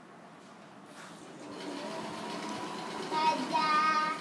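A child's voice held on a steady, high-pitched sung note: faint at first, then loud for about the last second.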